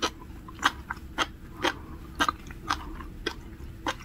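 A mouthful of sea grapes being chewed. The small seaweed beads crunch in sharp pops about twice a second.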